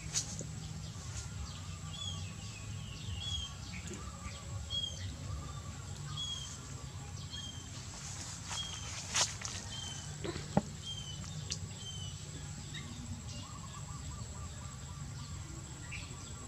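A bird repeating a short, high chirp about once or twice a second, falling silent a few seconds before the end, over steady outdoor background rumble. Two sharp clicks stand out a little past the middle.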